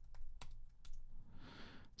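Computer keyboard typing: a handful of soft, scattered keystroke clicks, with a faint hiss near the end.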